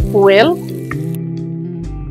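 Stuffed pork loin sizzling as it browns in an electric skillet, under background music with long held notes.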